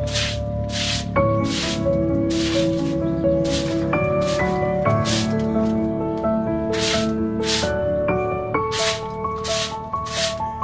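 Background music with sustained chords changing about once a second, over which a stiff bundled-fibre broom sweeps a dirt floor in short hissing swishes, mostly in quick pairs.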